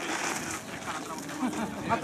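Faint, scattered voices of people calling and talking, over a steady outdoor hiss.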